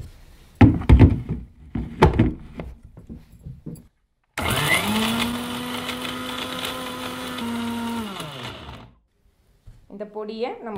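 Electric mixer grinder with a small steel jar. A few knocks as the jar is handled and set on the base, then about four seconds in the motor spins up with a short rise in pitch. It runs steadily for about four seconds, blending the dry face-wash powders, and then winds down, falling in pitch.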